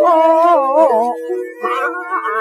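Cantonese opera singing from a 1930 Victor record: a male voice sings a wavering, bending sung line over a steady held accompaniment note. The voice stops about a second in, the sound dips, and a higher held instrumental phrase enters near the end.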